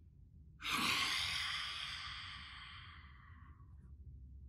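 A woman's forceful open-mouthed exhale, the long breathy "haaa" of yoga lion's breath, starting about half a second in and fading out over about three seconds.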